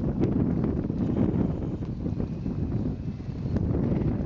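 Wind buffeting the camera microphone: a gusty low rumble that swells and dips throughout.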